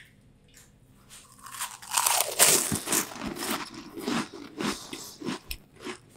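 A person biting into and chewing a mouthful of crunchy puffed snacks. After a short pause, the crunching starts about a second and a half in, is loudest at the first bites, and goes on as a rapid run of crunches until just before the end.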